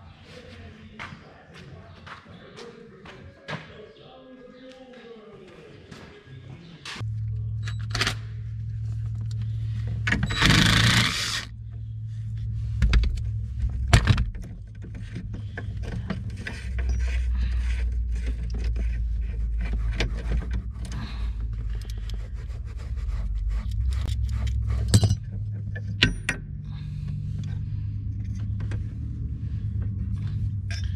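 Clicks, clinks and scrapes of metal parts and tools as the seat suspension linkage of a John Deere 4640 tractor is worked apart by hand. There is a brief loud burst of noise about eleven seconds in, and a steady low hum starts about seven seconds in.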